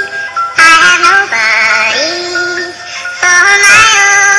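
Music with a synthesized singing voice holding long notes that step between pitches, one note wavering with vibrato; it dips briefly before a loud held note near the end.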